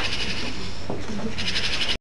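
A rapid, buzzing high trill in two spells, breaking off about half a second in and starting again near the end, over a faint low murmur.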